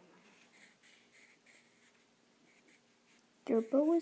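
Pencil sketching on paper: faint, short scratching strokes, about three a second.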